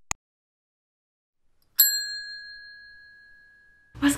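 Two quick mouse clicks, then a single bright bell ding that rings out and fades over about two seconds: the click-and-bell sound effect of a subscribe-button animation.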